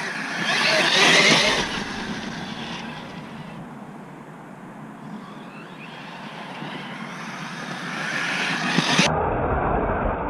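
Arrma Talion RC car on a 6S battery driving hard, its brushless electric motor and tyres on wet ground loudest as it passes close about a second in, then fading and building again near the end.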